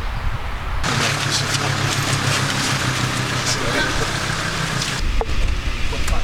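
A car engine running steadily amid a crowd's indistinct voices, with a few sharp clicks.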